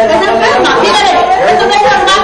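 Several people talking loudly at once, their voices overlapping in a heated argument among neighbours.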